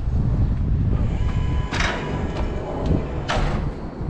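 Electric stair-climbing hand truck loaded with a washing machine, its motor running with a faint whine as it starts down the first step, with two harsh clunks about a second and a half apart over a steady low rumble.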